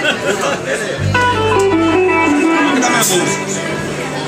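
Electric guitar played on a live stage, a short run of single notes stepping downward in pitch over a held low note, as the band warms up before its first song. Room chatter runs beneath it.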